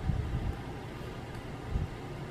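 Low, steady background rumble, with soft thumps of a hand and gel pen against a paper planner page, near the start and again just before the end.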